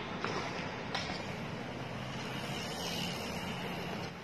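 Steady city street noise heard from a moving bicycle: traffic on a multi-lane road, with two faint clicks about a quarter-second and a second in.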